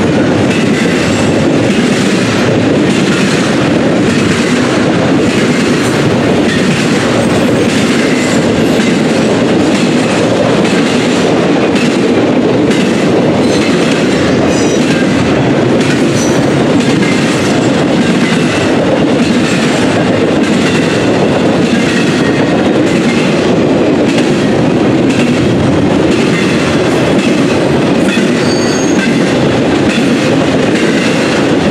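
Norfolk Southern double-stack intermodal freight cars rolling past close by: a loud, steady rumble with the rhythmic clickety-clack of wheels over rail joints, and a brief high wheel squeal near the end.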